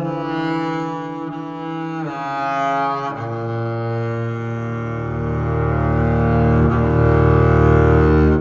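Solo double bass played with the bow: long sustained notes that shift lower about three seconds in, with the low notes growing louder toward the end.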